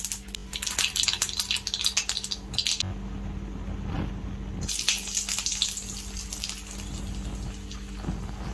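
Hot oil in a metal kadai sizzling and crackling as seeds fry in it for a tempering. The crackling is dense at first, calms for a second or so past the middle, then picks up again and thins out, over a steady low hum.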